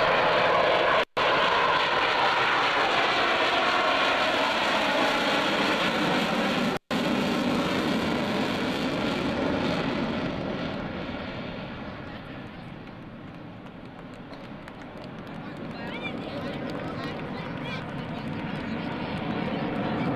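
F-14 Tomcat jet noise, loud at first, fading to its lowest about two thirds of the way through, then building again as the jet comes back toward the listener. The sound cuts out completely for an instant twice, about one second and about seven seconds in.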